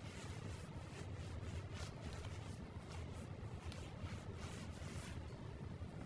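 Faint light scraping and ticking of a spoon working through a pan of simmering adobo as ground pepper is added, over a low steady hum.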